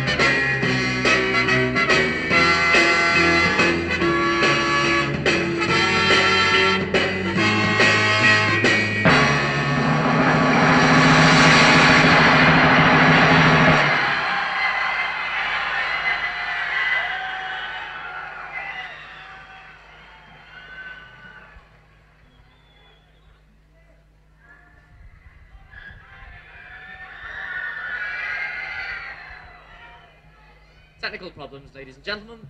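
A live pop band playing the end of a song, finishing on a loud held chord with a cymbal wash that stops about fourteen seconds in. Then a much quieter stretch of audience noise that fades down and swells again near the end.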